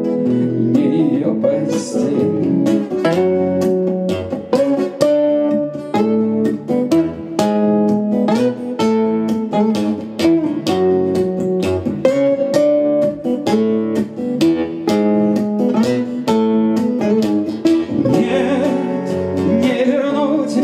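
Two acoustic guitars playing an instrumental break in a song, with many separate plucked notes changing in pitch.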